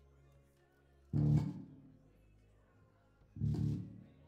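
Two loud chords struck on an amplified guitar, about two seconds apart, each ringing briefly before being cut short, over a faint low amplifier hum.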